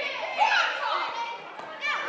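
Children's voices shouting and calling out, several overlapping, with one loud falling shout near the end.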